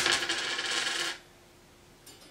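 Clothes on hangers being shoved along a closet rail, with the hangers scraping and clinking for about a second before the sound cuts off suddenly.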